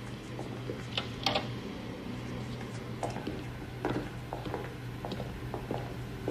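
Scattered light knocks and shuffles of people moving about in a room, over a low steady hum.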